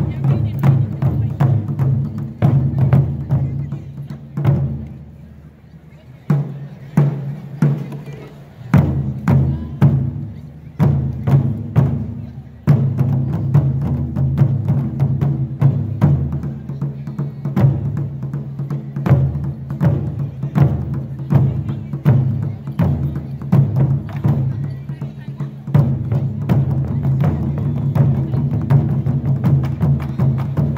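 A taiko drum ensemble: several barrel-shaped taiko drums struck with sticks in fast, dense rhythm. The playing thins to sparser, quieter strikes about five seconds in, picks back up with spaced heavy hits, then runs loud and continuous from about thirteen seconds in.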